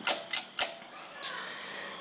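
Three sharp metallic clicks close together as the exposed balance shaft end of a Honda H22 engine is handled, then a faint steady background.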